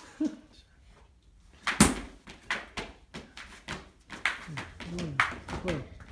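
Laughter, then one loud thump about two seconds in, followed by a string of shorter, sharper knocks, with faint voices near the end.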